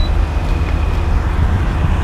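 Low, steady rumble of an idling semi-truck diesel engine.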